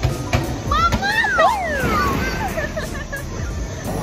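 High voices in a busy indoor playground calling out with sliding pitch, rising and then falling, about a second in, over background music and crowd noise.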